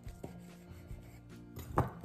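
Faint taps and scrapes of a butter knife cutting through soft dough against a stone countertop, over quiet background music.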